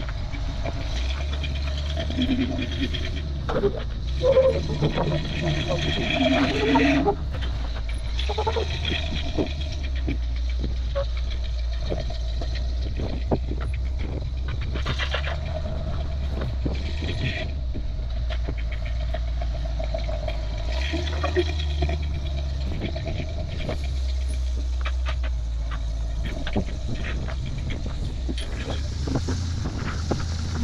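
Rock-crawling buggy engine running at low revs in a steady low rumble that swells and drops with the throttle as the buggy crawls up slickrock. People talk over it for several seconds near the start.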